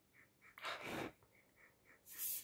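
A short, faint sniff through the nose, about half a second in, lasting about half a second: a person smelling a perfume deodorant to judge its scent.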